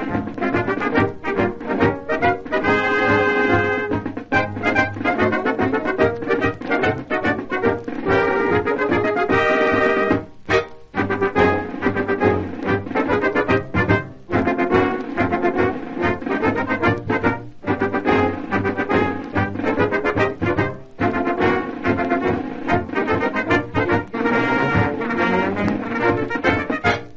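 Brass-band theme music led by trombones and trumpets, from an early-1930s radio broadcast recording, playing on with short breaks between phrases. It sounds dull, with no top end.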